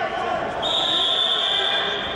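Referee's whistle blown once, a steady high tone lasting over a second that starts about half a second in, over background voices.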